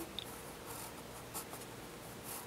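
Pencil drawing on paper: a few short, soft scratching strokes.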